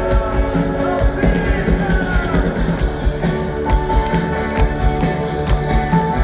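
Live rock band playing, heard from within the audience: a steady kick-drum beat about twice a second under sustained guitar and keyboard lines.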